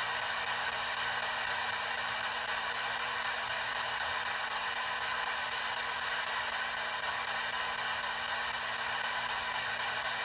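P-SB7 spirit box radio sweeping in reverse, giving a steady hiss of radio static.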